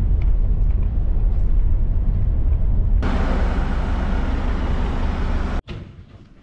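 Inside a moving tour coach: steady deep engine and road rumble in the cabin, with more road and wind noise from about halfway, cutting off abruptly near the end.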